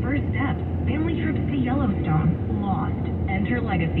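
A voice talking on the car radio, heard inside the cabin over the steady low rumble of the car driving on the freeway.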